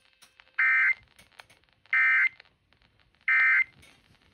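Emergency Alert System end-of-message data bursts played through a radio's speaker: three short, identical buzzy bursts about a second apart, the standard signal that the relayed severe thunderstorm warning has ended.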